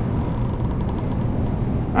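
A steady low rumbling drone, with a faint thin hum above it.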